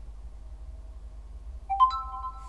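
Realme 10 smartphone playing a short rising three-note electronic chime near the end, after a quiet stretch of low hum. The chime is the phone signalling that the wired USB keyboard has just been detected over OTG.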